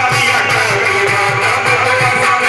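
Qawwali music: held harmonium chords over a steady tabla beat of about three strokes a second.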